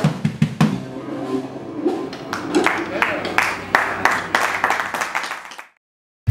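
Acoustic drum kit played fast in a solo: rapid snare, tom and bass drum strokes, with a sustained cymbal wash over the hits from about halfway. The sound cuts off suddenly near the end.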